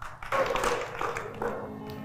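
Scattered hand clapping, with the show's background music carrying held notes from about halfway through.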